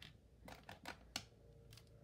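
A few faint, sharp clicks and ticks: the MakeID Q1 label printer's built-in cutter clicking at the start, then a small paper label being handled and its backing peeled off.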